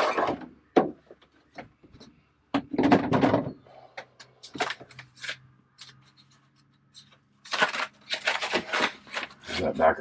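Handling noise from taking down an overhead cabin panel and a sheet of foil-bubble insulation: a rough scraping rub about three seconds in, scattered clicks and knocks, then a run of crackling and crinkling between about seven and a half and nine and a half seconds.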